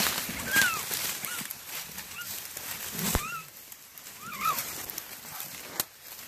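Coonhounds fighting a caught raccoon in leaf litter: a few short, high, arching cries and yelps over scuffling, with a knock about three seconds in and a sharp click near the end.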